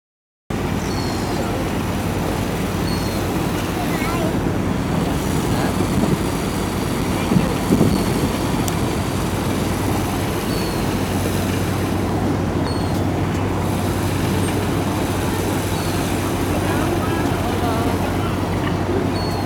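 Steady low engine hum of a small passenger boat idling at a pier, under indistinct voices and general harbour noise.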